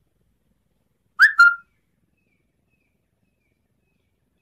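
A bird calls twice in quick succession, two short clear notes about a second in, the second note held steady.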